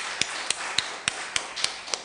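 Hand clapping in an even rhythm, about three and a half sharp claps a second, over lighter scattered applause.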